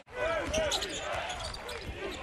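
A basketball being dribbled on a hardwood arena court, with arena crowd noise behind it. The sound breaks off briefly at the very start and then comes back in.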